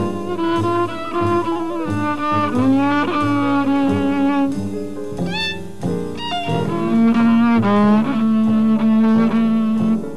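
Jazz violin played with the bow: long held notes with slides in pitch between them, over a double bass playing shorter, lower notes.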